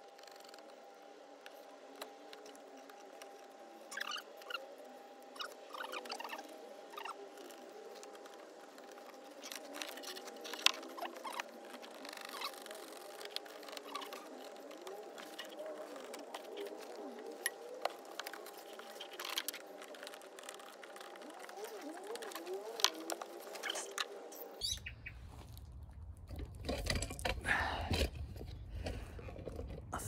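A knife scraping and cutting through the rubber cab floor mat of a Peugeot Boxer van, a run of small irregular scratches and clicks over a faint steady hum.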